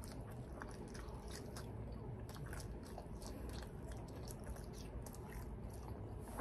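A person chewing soft cheesy bread: faint, irregular wet mouth clicks and smacks.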